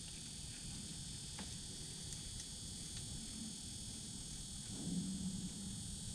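Quiet, steady background hiss with a faint low rumble, and a brief soft low sound about five seconds in.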